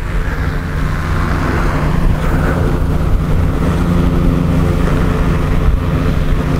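A vehicle's engine running steadily as it drives along, growing a little louder over the first couple of seconds.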